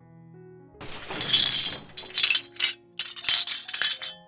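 A sound effect of glass shattering: a crash of breaking glass about a second in, then two more bursts of smashing and tinkling shards. Soft piano music plays underneath.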